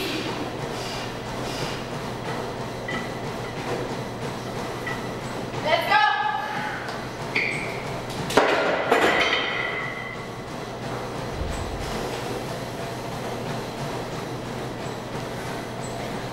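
A loaded 455 lb barbell is racked onto a steel power rack's hooks a little past eight seconds in: a sharp metal clang, then the plates clinking and ringing for about a second and a half. A short vocal shout comes about two seconds earlier. A steady low hum runs underneath.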